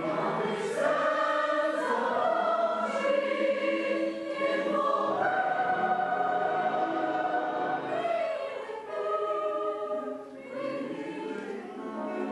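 Large mixed choir of men's and women's voices singing in sustained chords, with a long chord held through the middle and a brief dip in level near the end.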